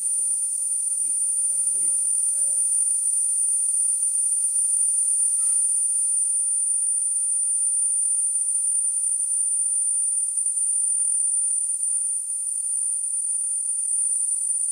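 Milk sample stirrer running with a steady high-pitched whine and hiss, mixing a milk sample before it is tested.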